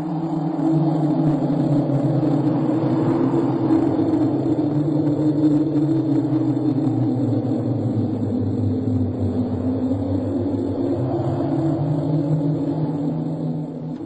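Low, sustained synthesizer drone of two deep tones that slowly drift in pitch, with a rumbling undertone. It swells in over the first second and eases off near the end.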